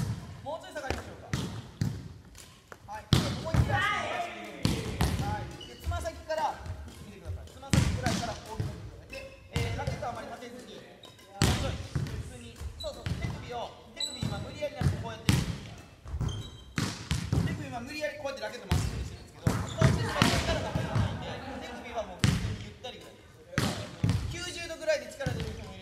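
Badminton rackets striking shuttlecocks and players' footfalls on a wooden gym floor, in quick irregular knocks through the whole stretch, with indistinct voices in the hall.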